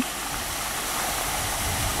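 Steady rushing noise of a 2 HP solar water pump running and pumping water, even throughout.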